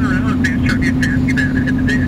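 A vehicle engine running at steady revs, with a broken high whine over it.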